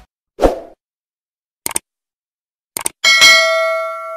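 Subscribe-button animation sound effects: a short thump, two quick double mouse clicks about a second apart, then a notification bell ding that rings on and fades.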